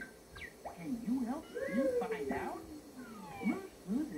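Blue, the cartoon puppy from Blue's Clues, giving a run of short, high, human-voiced barks, with one long falling call about two seconds in, heard through a television speaker.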